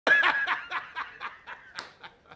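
A man laughing out loud: a run of 'ha's, about four a second, loudest at first and growing quieter as it trails off.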